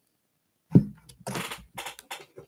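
Craft paint bottles and supplies being handled on a work table: a knock about three-quarters of a second in, then short rustles and clicks as the bottles are picked through.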